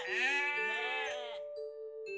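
A sheep bleating: one long call that stops about a second and a half in, over soft background music.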